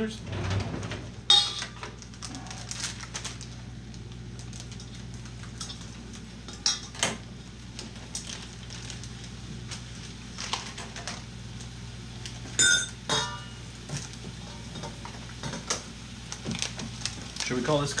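Scattered clinks and knocks of a stainless steel mixing bowl being handled as dough is mixed in it, one ringing metallic clink a little after the middle, over a steady low hum.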